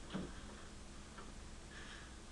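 Faint ticks or taps over quiet classroom room tone: one clear tick just after the start, then two softer ones in the second half.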